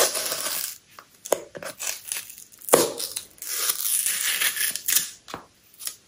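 Black cardboard perfume box being handled and opened: cardboard scraping and rubbing in two long stretches, with a few light knocks and clicks between them.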